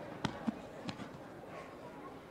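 Three sharp smacks within the first second, over a background of people's voices in the hall.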